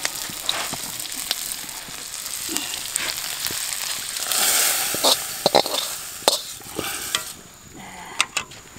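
Spice paste and leaves sizzling in oil in a wok, with a metal spatula scraping and clinking against the pan. About four seconds in the hiss swells louder as the hot contents are tipped into a pot of broth, followed by a few sharp clinks of the spatula.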